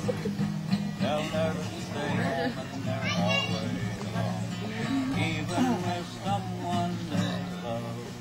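Acoustic guitar strummed in steady chords, with people's voices over it.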